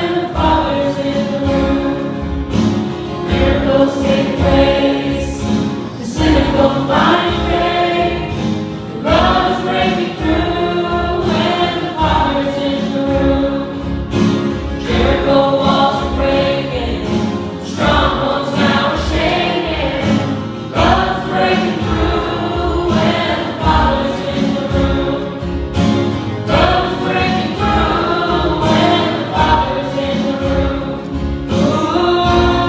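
A live worship band playing a song: several voices singing together over strummed acoustic guitars, with a steady beat.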